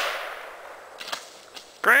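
The report of a Sears Model 101.1380 .410 bolt-action shotgun, fired a split second earlier, dying away over about a second. Two faint clicks follow, and a short exclamation of a man's voice comes near the end.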